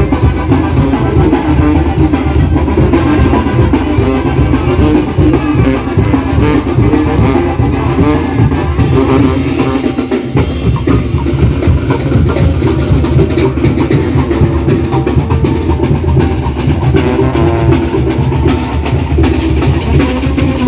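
Mexican marching brass band (banda de viento) playing: sousaphones, trumpets and saxophones over a bass drum with a mounted cymbal, loud and continuous.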